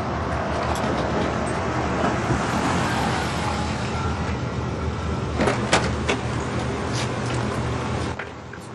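A car's engine running steadily and drawing close, then several sharp clicks and knocks of car doors about five to seven seconds in.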